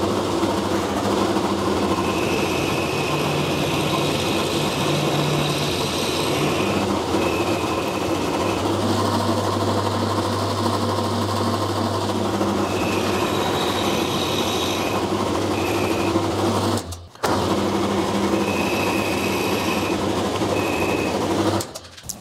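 Milling machine running, its five-flute end mill side-milling a small mild-steel part to length in light passes: a steady motor and spindle sound with a high whine that comes and goes. The sound breaks off briefly about three-quarters of the way through.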